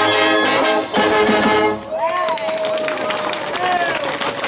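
Brass-heavy marching band playing a tune that cuts off on its final note about two seconds in. Crowd noise and voices follow.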